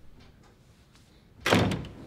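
A door shutting with a bang about one and a half seconds in, with faint room tone before it.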